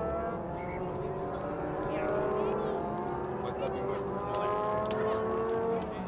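A motor vehicle engine accelerating through its gears, its pitch climbing slowly, dropping back at each change and climbing again, then fading out just before the end.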